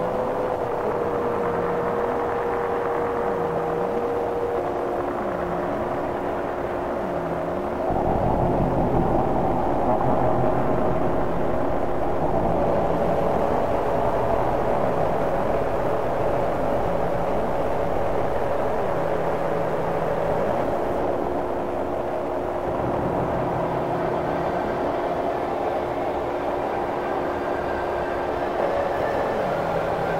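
Industrial noise music: sustained droning tones over a grainy rumbling noise bed, with a low sound that dips down and back up roughly every second and a half. About eight seconds in a heavier low rumble comes in, easing off again around two-thirds of the way through.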